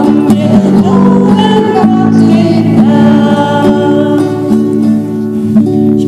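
Several women singing a German children's song together, accompanied by a strummed acoustic guitar.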